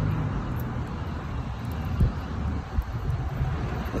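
Steady low rumble of street traffic, with two short thumps about two and three seconds in.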